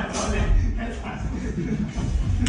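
Indistinct voices talking in a large room, over a low rumble.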